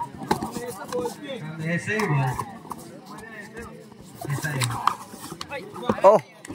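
Men's voices shouting and calling out in short bursts during a kabaddi raid, with a few short knocks among them.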